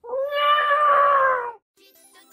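A single long meow, held about a second and a half, steady and then falling slightly in pitch before it stops.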